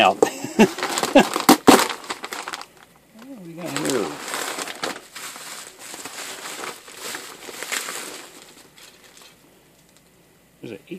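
Plastic bubble wrap crinkling and crackling as a wrapped circuit board is handled and unwrapped, dying away near the end.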